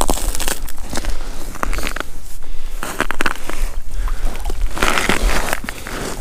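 Snow crunching and scuffing under boots and knees on the ice, a string of irregular crackles and scrapes over a low rumble.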